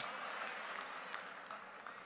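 Congregation clapping, faint and scattered, dying away.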